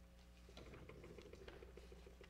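Near silence: room tone in a sanctuary, with faint scattered clicks and soft shuffling as people move about at the front.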